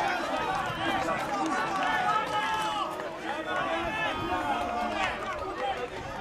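Several men's voices shouting and calling out at once on an amateur football pitch, overlapping and unscripted, the players and onlookers reacting to the play.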